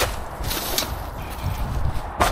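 Rustling and a few light knocks from rubbish bags and items being handled in a metal skip, with footsteps.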